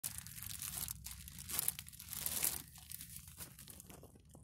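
Plastic bread bag crinkling as it is handled and turned over, in several irregular bursts that grow quieter near the end.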